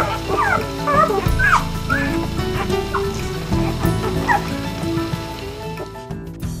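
Newborn Vizsla puppies squeaking and whimpering in several short rising-and-falling cries over background music, which gradually gets quieter.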